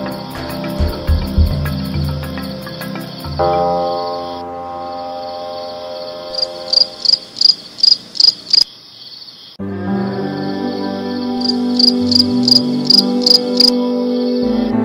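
Crickets chirping at night: a steady high trill with two runs of fast, loud pulsed chirps, over soft background music of sustained notes that stops briefly in the middle.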